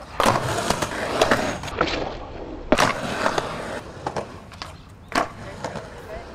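Skateboard wheels rolling on concrete, broken by the sharp clacks of board pops and landings; the loudest clack comes about three seconds in, another just after five seconds.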